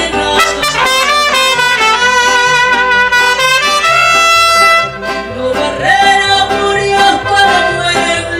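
Mariachi group playing: two trumpets play a bright instrumental phrase over accordion and a repeating bass line, cutting off about five seconds in, after which a woman's singing voice comes back in over the accompaniment.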